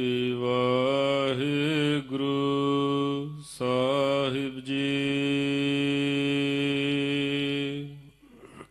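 A man chanting Gurbani in long, drawn-out held notes with slight wavering glides, breaking off briefly about two seconds in and again around three and a half seconds.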